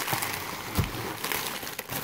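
Plastic packaging crinkling and rustling as it is handled, with a couple of light knocks.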